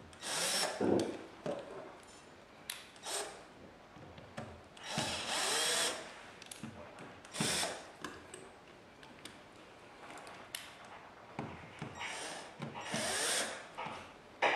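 Cordless drill-driver driving the mounting screws of a flush wall socket, run in several short bursts of about a second each, with small clicks of the tool and fittings between runs.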